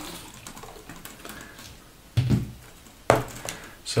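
A Dell Latitude laptop being handled as it is turned over and opened: faint rubbing and light clicks of the plastic case, a short dull knock about two seconds in, and a sharp click about a second later.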